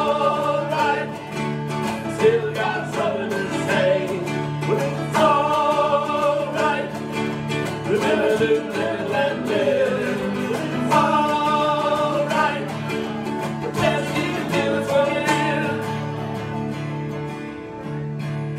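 Live band music: strummed acoustic guitars under a held melody line that returns every few seconds, over a steady low note.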